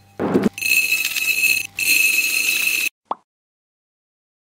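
An electronic buzzer sounds twice, each buzz about a second long with a short break between, after a brief rustling burst, and is followed by a short blip.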